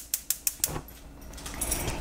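A quick run of small sharp clicks and rattles, about seven in under a second, from a spice shaker jar being picked up and handled, over a low steady hum.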